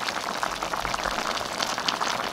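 Chicken pieces and tomatoes sizzling in an open stainless steel pan: a steady, dense patter of small crackles.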